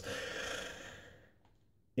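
A man's long, soft breath between phrases of speech, fading out after about a second.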